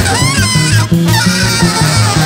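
A live free-jazz big band playing. A double bass walks in separate low notes under a saxophone that honks and bends its pitch up and down in the high register, with other horns around it.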